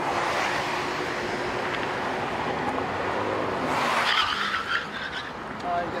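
Freeway traffic: passing cars making a steady rush of tyre and road noise, which swells at the start and again about four seconds in.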